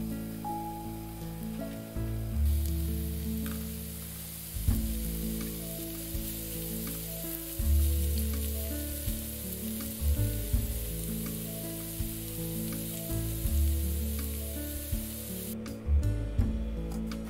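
Diced onion and bell pepper sizzling in oil in a frying pan, over light background music. The sizzle grows stronger about two and a half seconds in and stops suddenly near the end.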